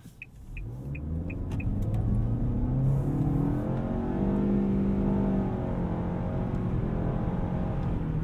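Nissan Altima's 2.5-litre naturally aspirated four-cylinder accelerating through its CVT, heard from inside the cabin: the engine pitch climbs over the first few seconds and then holds steady. The turn-signal ticker clicks during the first second and a half.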